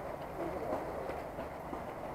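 Murmur of a crowd of people talking among themselves, no single voice standing out, over a steady low rumble.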